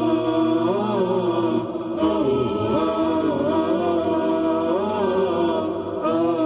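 Vocal intro music: layered voices chanting long, gliding notes over a steady held drone, with a brief dip about two seconds in.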